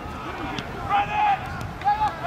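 Short, distant shouted calls from players on a rugby pitch during open play, over a steady outdoor rumble.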